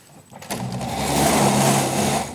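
Handling noise from the video camera being shifted and panned on its mount: a loud rubbing, rushing scrape that starts about half a second in, builds, and fades just after the end.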